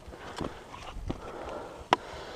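Trekking pole tip and boots striking granite during a rock scramble: a few light taps, then one sharp click near the end.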